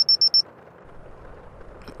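Digital thermometer beeping five times in a quick, even run of high beeps, the signal that its temperature reading is done.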